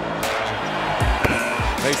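Dramatic background music. A rushing swell comes in just after the start, followed by a few heavy low thumps from about a second in.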